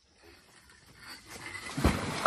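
A person dropping from a rope swing into a shallow pond: a rising rush of noise, then a heavy splash into the water just before the end.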